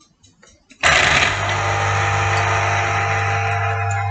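Electric citrus juicer starting up about a second in as an orange half is pressed onto its reamer cone, then running with a loud, steady motor hum.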